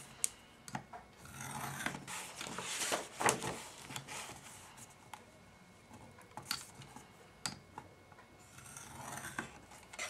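Plastic scoring tool drawn along the groove of an Envelope Punch Board, scraping across the paper as the flap score lines are made. There are a few strokes of a second or so, with a few sharp clicks between as the paper and tool are set down and repositioned.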